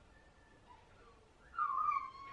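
An animal's short, high-pitched whine about one and a half seconds in, falling slightly in pitch, after a stretch of near quiet.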